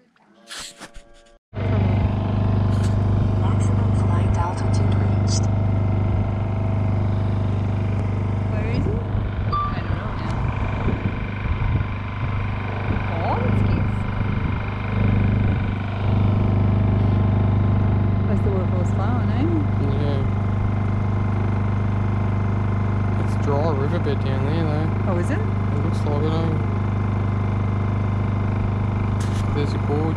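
Boat's outboard motor running steadily with a low hum, starting abruptly about a second and a half in.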